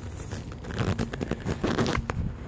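Handling noise on the camera's microphone as the camera is passed from hand to hand: a quick run of small knocks and rubbing, thickest in the second half.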